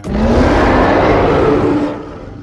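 Loud Tyrannosaurus rex roar: a harsh, noisy growl with a low tone that rises at the start and then holds.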